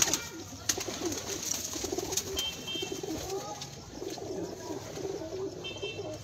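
Domestic high-flyer pigeons cooing, several calls overlapping without a break, with a few sharp knocks.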